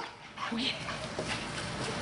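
A dog gives one short yip about half a second in while running in play.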